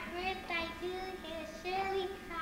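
Young children singing a song, a string of held notes sung in steady succession.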